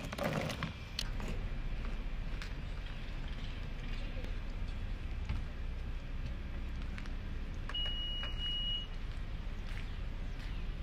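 Steady low outdoor rumble with a few scattered knocks as things are loaded into an SUV's open rear hatch. About eight seconds in, a car's high electronic beep sounds for about a second, with a brief break partway through.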